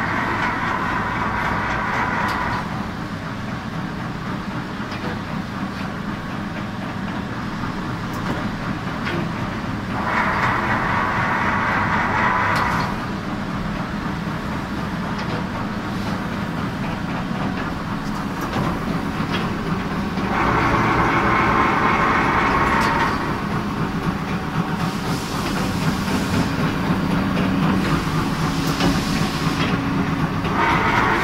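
Ruffinatti IM30 machine running: a steady mechanical hum, with a louder hissing surge of about two and a half seconds that comes back about every ten seconds as the machine works through its cycle moving its two blades on their shafts.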